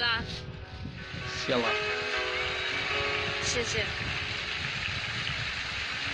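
A woman singing "I Will Always Love You" live into a microphone, holding long notes, with a steady wash of background noise coming up beneath her from about two seconds in.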